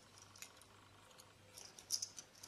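A few faint, sharp clicks from fingers handling a thin glass cover slip, the loudest near the end.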